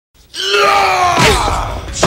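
A man's drawn-out yell of effort or pain, held on one pitch and then falling away, with a sharp hit about a second and a quarter in, in a film fight scene.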